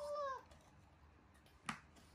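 A baby monkey gives one short whining call at the very start that holds its pitch and then falls away. Near the end there is a single sharp tap.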